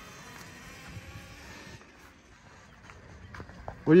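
Faint, steady whine of a Talaria Sting R electric dirt bike's motor as it rides across grass at a distance, fading after about two seconds; a man starts speaking at the very end.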